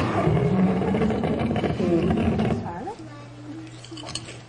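A loud, rough roar with wavering pitch that dies down about three seconds in, leaving a low steady hum.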